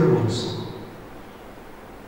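A man speaking a short stretch that ends about half a second in, then quiet room tone.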